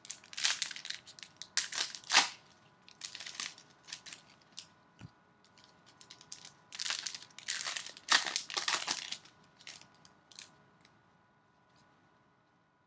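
Trading-card pack wrappers being torn open and crumpled by hand, in irregular crinkling bursts with short quiet gaps between them.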